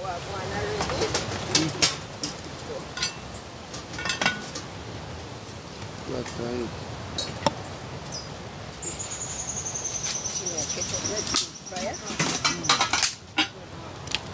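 Metal cooking pots and pans clinking and knocking as they are handled, in scattered strikes. Past the middle a thin high whistle sounds for about four seconds, falling slightly in pitch.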